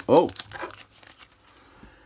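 Plastic bubble wrap crinkling as a small wrapped packet is handled and set down, a few crisp crackles in the first half second, then fading to faint rustles.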